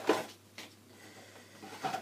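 Plastic bottles of a hair-colour kit being handled: a short sharp knock just at the start, then faint rustling and a small click near the end.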